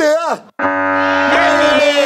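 Game-show buzzer sounding for a wrong answer: a steady, brassy horn tone that cuts in suddenly about half a second in and holds, after the answer 'scouts' is shouted.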